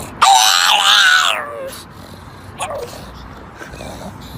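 A pug letting out a loud, high-pitched yowling cry lasting over a second, pitch bending up and down, then a shorter cry a little past the middle.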